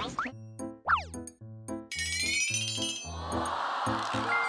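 Background music with a bouncy, pulsing bass line, overlaid with cartoon-style editing sound effects: a quick boing that sweeps down and back up in pitch about a second in, then a bright glittering shimmer from about halfway.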